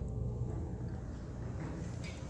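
Steady low hum of running HVAC machinery.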